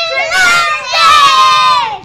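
Several young girls shouting together in a loud, excited cheer, their high voices overlapping, ending in one long shout that falls in pitch.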